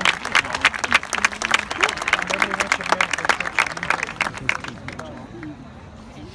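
Audience applauding in the stands, dying away about five seconds in, with people's voices under it.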